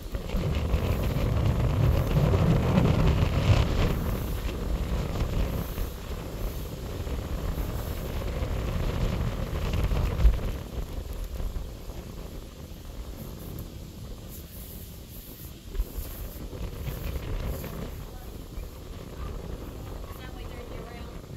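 Close, breathy huffing and low rumbling noise on the microphone as a person climbs steel stairways and grated walkways, louder in the first half, with a couple of short knocks from footsteps on the metal.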